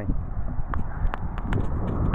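Wind buffeting a handheld action camera's microphone, a steady low rumble, with a few light clicks from the camera being handled.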